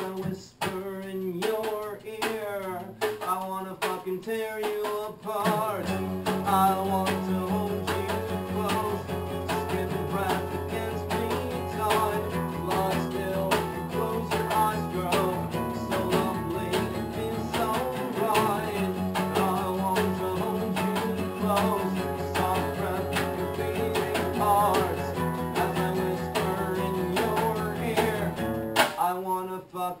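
Acoustic guitars strummed together with an acoustic bass guitar in an unplugged rock song. The low bass notes come in about six seconds in.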